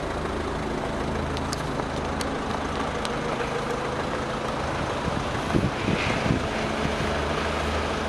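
Steady low hum of an idling engine, with faint outdoor background noise and a few light ticks.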